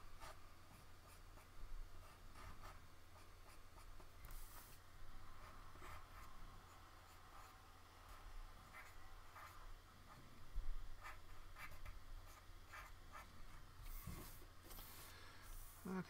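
Ink pen scratching on drawing paper in short strokes, with the sheet now and then slid and turned on the desk. A steady low electrical hum runs underneath.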